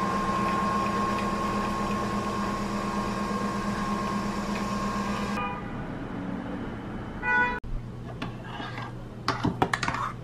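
Nespresso VertuoPlus capsule coffee machine running with a steady hum and whine as it brews into a mug, stopping about five seconds in. Near the end, a metal spoon clinks against the mug as the coffee is stirred.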